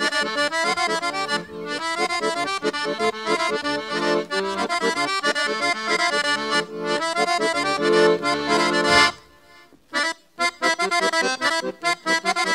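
Accordion playing a fast Bulgarian horo dance tune in quick running notes. The music breaks off for about a second around three-quarters of the way through, then starts again.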